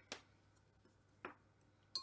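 Near silence with two brief soft taps about a second apart, from a slotted spatula and a lifted pastry round against a wooden chopping board.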